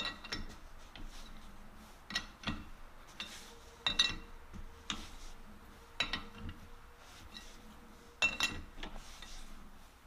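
Steel T-handle chuck keys clinking in the jaw screws of a four-jaw lathe chuck as the jaws are adjusted to center a part. Sharp metallic clinks with a brief ring, spaced a second or two apart, the loudest about four seconds in and just after eight.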